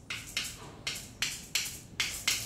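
Claves, the wooden sticks of salsa, struck in a short rhythm: about six sharp hits, roughly three a second.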